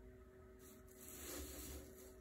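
Near silence: faint room tone with a steady low hum. From about half a second in there is a soft rustle of handling that swells and fades again.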